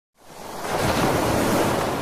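A surf-like rush of noise, swelling up out of silence over the first second and then slowly easing off: a whoosh effect laid over an opening transition.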